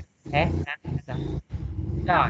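A man speaking Vietnamese over a video call: a short word, then a drawn-out, low voiced hesitation sound.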